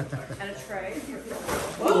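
Indistinct voices of several people talking over one another, louder near the end.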